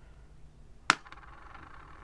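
A die thrown onto a hard plate, landing with one sharp click about a second in, then a faint rattle as it rolls and settles.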